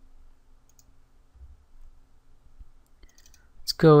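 Quiet room tone with a few faint computer mouse clicks while working in the software, then a man's voice begins near the end.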